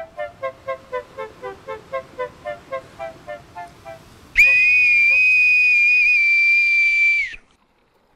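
A short run of quick, evenly spaced musical notes, about four a second, stepping downward in pitch. About halfway through, a brass boatswain's call (bosun's pipe) sounds one loud, shrill, steady high note held for about three seconds, then stops sharply.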